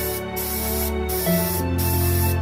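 Spray finish hissing in short bursts as a sword guard is coated in matte black, about four bursts with brief breaks between them. Background music with held notes plays underneath.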